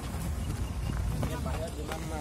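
Men's voices talking while a group walks, with footsteps on a gravel dirt road and a steady low rumble underneath.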